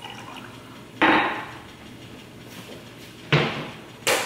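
A Bialetti stovetop espresso maker and coffee things being handled at the stove: two short sudden sounds about two seconds apart, each fading over about a second.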